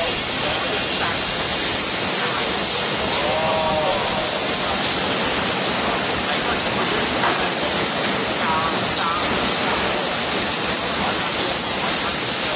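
Steady, loud roar of foundry machinery around a stainless-steel melting furnace, unchanging throughout, with faint distant voices under it.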